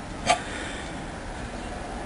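A single short click about a third of a second in, over steady low background noise.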